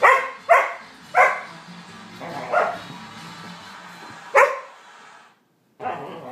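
Two Labradoodles barking at each other while play-fighting: five sharp barks, three in quick succession in the first second and a half, then two more spaced out, a gap of a second or more before the last. The sound cuts out briefly near the end.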